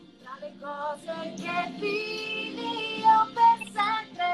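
A woman singing an Italian pop ballad over backing music, her voice coming in a moment after a brief lull.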